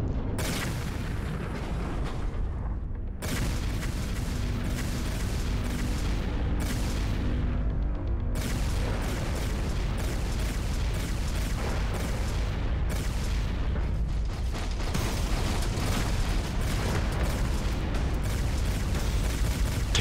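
Animated-series soundtrack: dramatic background music over a dense, continuous low rumble, with abrupt shifts in the mix about 3, 8 and 15 seconds in.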